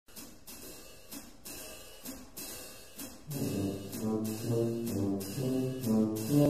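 Brass band with drum kit playing. A cymbal ticks a steady beat about twice a second, then low brass comes in with a bass line a little over three seconds in.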